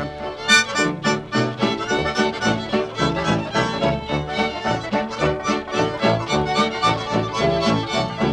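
Instrumental break in a 1943 country novelty song: a small band playing with a steady, even beat between sung verses.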